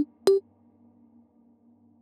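The last notes of an electronic track: two short, pitched synth hits, one at the very start and one about a third of a second in, then a faint low held tone.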